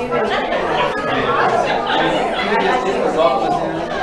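Many people chatting at once in a large room, overlapping voices with no single voice standing out.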